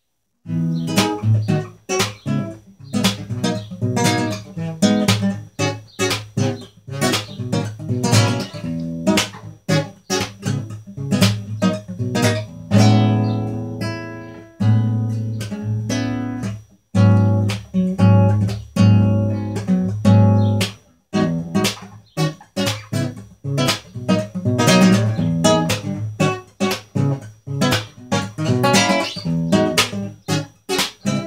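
Solo nylon-string classical guitar playing an instrumental passage of a jazzy Brazilian MPB song, plucked chords and single notes. The playing starts about half a second in.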